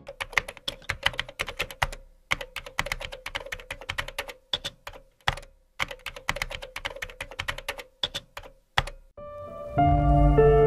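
Typing sound effect: rapid, irregular keystroke clicks, broken by short pauses about two, five and a half, and nine seconds in. Faint music comes in near the end.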